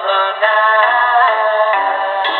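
A pop song with singing plays through the small speaker of a Tecsun 2P3 AM kit radio tuned to a distant AM station. There is no treble above about 4 kHz, the narrow sound of AM broadcast reception.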